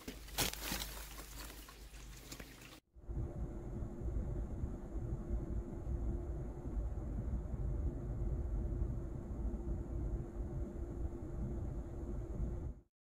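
Plastic grocery bags rustle as they are set down, with one sharp click, for the first few seconds. Then, after a sudden cut, a steady low rumble with a faint steady hum fills a parked car's cabin while the car idles.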